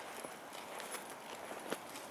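Walking on asphalt: a person's shoe steps and a small Maltese dog's paws on the road, heard as light irregular taps, with one sharper tap near the end.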